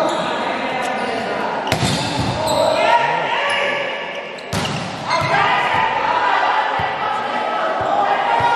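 A volleyball struck hard twice, about two seconds in and again about four and a half seconds in, each hit a sharp smack that echoes in a large gym. Players and spectators call out and chatter throughout.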